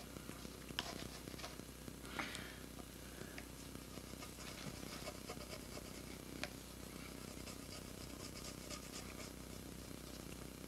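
Guitar pick scraping and rubbing sticky adhesive residue off a bass's gloss-finished body: faint and scratchy, with small ticks and a few sharper clicks, over a steady low hum.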